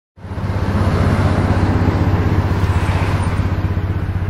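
Motorcycle engine running steadily with a fast, even beat of firing pulses, starting abruptly right at the beginning.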